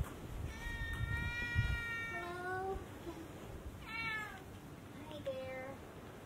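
Domestic cat meowing three times: a long drawn-out meow that drops in pitch at the end, then two short meows.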